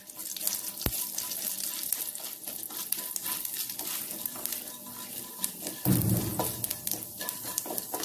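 Urad dal sizzling in hot oil in a nonstick kadai, stirred with a wooden spatula, with a steady high hiss. There is a sharp click just under a second in and a brief louder low rumble about six seconds in.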